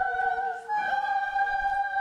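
Sopranos and altos singing sustained notes together, moving up a half step from F to F sharp about two-thirds of a second in. The director finds the half step sung too narrow: bigger than you think it is.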